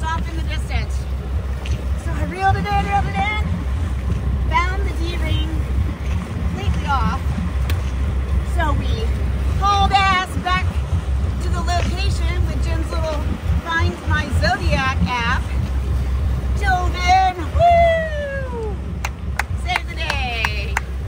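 A woman talking over the steady low rumble of a motor yacht under way, its engines and wake running underneath the whole time.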